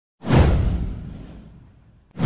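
A whoosh sound effect with a deep low boom under it. It comes in suddenly about a quarter of a second in and fades away over about a second and a half.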